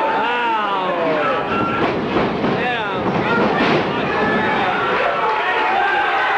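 Wrestling crowd shouting and yelling, several voices over one another with no clear words, and a long falling shout in the first second.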